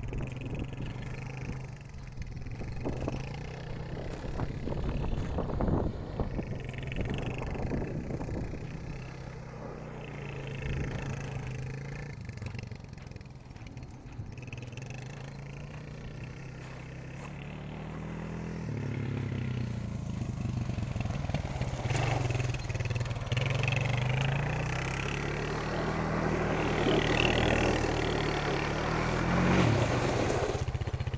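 Suzuki LT-Z400 quad's single-cylinder four-stroke engine revving up and down as it is ridden around on loose dirt. It grows louder over the last third as the quad comes close.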